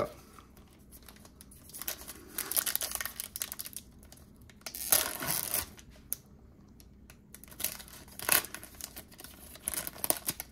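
Foil trading-card pack wrapper being torn open and peeled off the cards, crinkling, in several bursts a few seconds apart.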